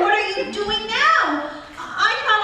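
Speech only: a woman speaking.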